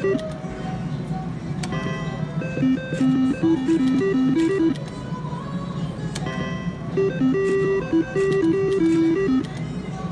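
Three-reel slot machine spinning twice, each spin playing a short electronic tune of stepped notes for about two seconds, over steady casino background noise and music.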